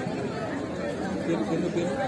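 Several people's voices chattering over one another, with no music playing.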